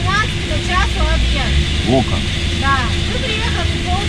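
Men's voices talking over the steady low hum of an idling truck diesel engine.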